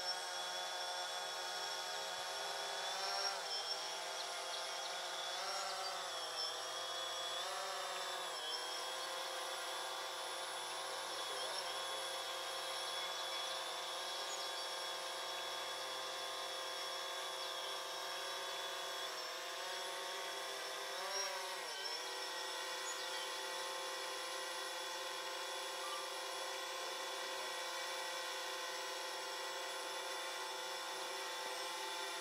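Propellers of DJI Phantom and DJI Spark quadcopter drones whining steadily in several overlapping tones. The pitch dips briefly and recovers a few times, about three to eight seconds in and again around twenty-one seconds in.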